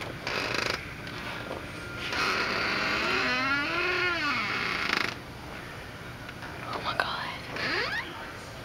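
Breathy whispering close to the microphone, with a drawn-out voice in the middle that rises and falls in pitch.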